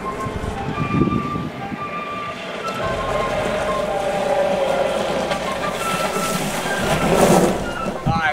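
An electric-converted 1977 Jeep CJ5 driving up a gravel drive, its tyres crunching on the gravel and growing louder as it nears, loudest just before the end. Flute music plays over it.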